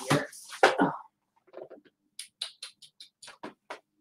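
A quick series of about ten light clicks and knocks over a second and a half, from objects being handled and set down.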